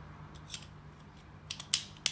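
Metal clicks of a surgical quick-connect handle's slide-back mechanism as a trial drill guide is snapped into it: a light click about half a second in, then a quick cluster of sharper, louder clicks near the end.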